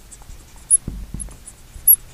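Felt-tip marker writing on a glass lightboard: short scratchy strokes with high squeaks, two of them louder, just before the middle and near the end.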